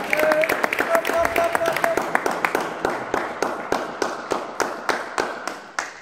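Spectators clapping for a won point in a table tennis match, a steady run of claps about five a second that slowly dies away. A voice calls out briefly in the first two seconds.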